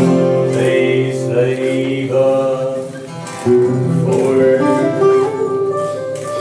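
Several acoustic guitars strummed and plucked together in a live performance, with singing over them; the playing dips briefly about halfway through before picking up again.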